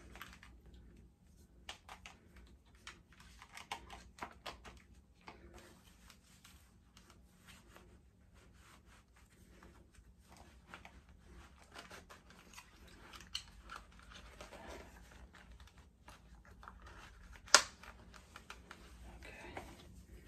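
A gun holster being fitted inside the waistband and onto a belt: scattered small clicks and clothing rustle, with one sharp click near the end.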